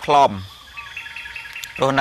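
A man preaching in Khmer, with faint high bird chirps in the pause between his phrases.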